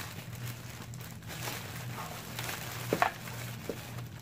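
Clear cellophane gift bag crinkling and rustling as a sign is slid into it by hand, with a few sharper crackles about three seconds in, over a low steady hum.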